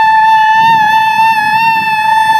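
A loud, steady high-pitched tone, wavering slightly in pitch, that cuts in suddenly just before and holds throughout, over faint voices and laughter.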